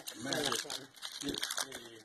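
Foil booster-pack wrapper crinkling in the hand as a trading card pack is handled and its cards pulled out.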